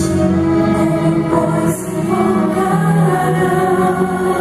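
Christian choir singing long held notes over backing music, played through a loud stage sound system.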